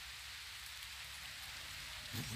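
A faint, steady hiss of outdoor background noise with no distinct events.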